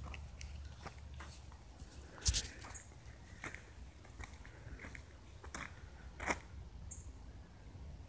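Handling noise from a hand-held phone: scattered small clicks and rubs, with a louder knock about two seconds in and another about six seconds in, over a low steady rumble.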